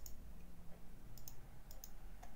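A few light, sharp clicks at a computer, mostly in quick pairs.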